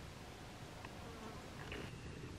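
Faint buzz of a flying insect passing, coming in about halfway through and growing stronger near the end, over a steady background hiss.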